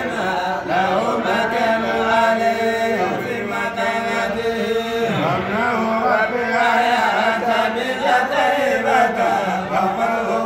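Unaccompanied male voices chanting a Hamallist Sufi zikr (kassida), a wavering sung line carried without a break over a steady lower held note.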